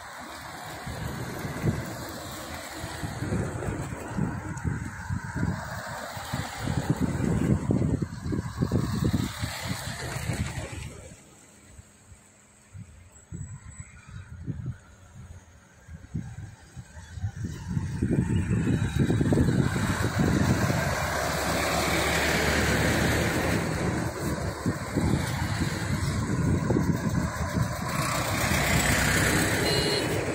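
Road vehicles passing close by on a narrow road. A run of cars goes past for the first ten seconds or so, then there is a brief lull, and from about halfway a bus goes past with a loud, steady engine and tyre noise.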